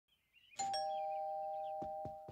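Two-note ding-dong doorbell chime, a higher note then a lower one, each ringing on and slowly fading. A soft knock near the end.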